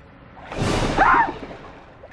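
A single whooshing rush of noise that starts about half a second in and fades away within about a second, with a short exclamation in the middle of it.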